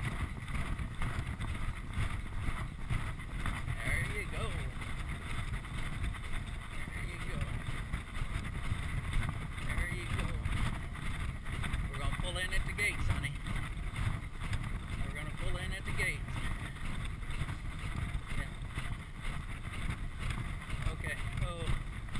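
Wind buffeting a chest-mounted action-camera microphone on a rider galloping a racehorse, a steady rough rumble with the horse's galloping hoofbeats on the dirt track muffled within it.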